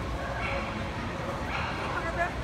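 A dog barking twice, about half a second in and again near the end, over the steady din of chatter in a large hall.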